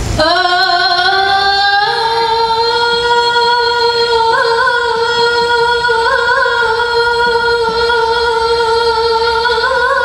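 A solo female qasidah singer holding one long note through a microphone and loudspeakers, sliding up into it over the first two seconds and then sustaining it with a few small ornamental turns. There are no instruments under her.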